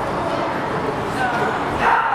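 Steady chatter of a crowd echoing in a sports hall, with a short sharp shout near the end: a karate kiai from a competitor performing kata.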